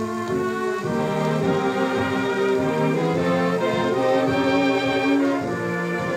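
A 78 rpm shellac record of a dance orchestra playing an instrumental passage led by brass, sustained chords changing about once a second, heard through a small Bluetooth speaker fed from a suitcase record player's flip-stylus cartridge.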